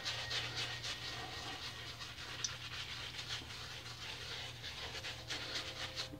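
Synthetic shaving brush working shaving cream into a lather on a bearded face: faint, rhythmic scrubbing strokes, a few a second.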